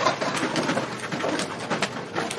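Fresh lettuce leaves rustling and crinkling as gloved hands pull them apart and lay them on bread, with irregular small crackles and clicks.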